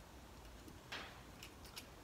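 Faint small-parts handling: a short soft rustle about a second in, then a few light clicks as washers and a nut are fitted by hand onto a bolt through a plastic transducer mount.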